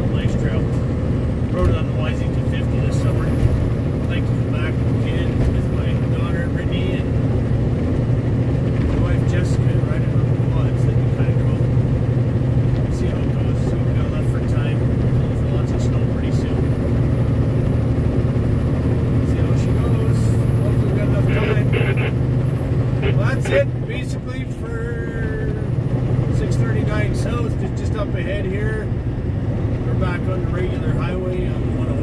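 Truck engine and tyre noise heard from inside the cab while driving at steady speed: a continuous low drone with scattered clicks and rattles, easing off briefly near the end.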